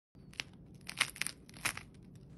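The crisp, crackly crust of a freshly baked no-knead bread loaf cracking under a fingertip pressing into it: a quick series of sharp crackles.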